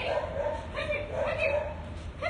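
A dog giving several short, high-pitched yips.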